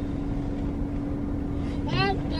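Car engine idling, heard inside the cabin as a steady low rumble with a steady hum.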